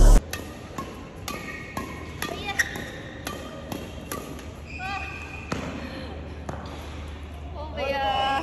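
Badminton racket strings striking a shuttlecock again and again in a fast defensive exchange, sharp hits about two a second.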